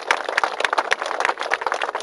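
Crowd applauding: a dense, irregular patter of many hand claps.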